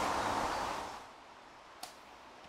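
A rustling noise fades out over the first second, leaving quiet, and a single sharp click sounds near the end.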